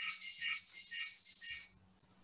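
Garbled, high-pitched whistling buzz from a faulty microphone or connection on a video call, warbling several times a second, then cutting off abruptly near the end as the feed drops.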